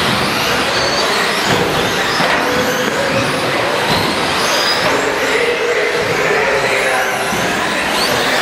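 Several 1/10-scale electric 2WD short-course RC trucks racing together, their motors whining and sliding up and down in pitch with the throttle over a steady rush of tyre and drivetrain noise.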